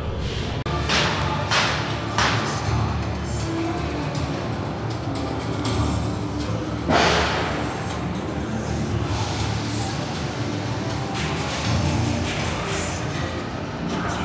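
Ambient music with a low, steady rumbling drone, broken several times by short hissing bursts.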